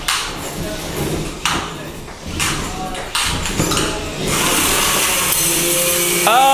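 Three-pound combat robots clanking and scraping against each other in the arena, with irregular metallic knocks. About four seconds in, a steady whirring hiss sets in, with a hum joining it shortly after.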